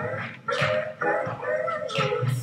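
Vocal sounds recorded into a live looper and played back as a repeating loop. Short pitched voice sounds and hissing noises layer over one another in a steady pattern.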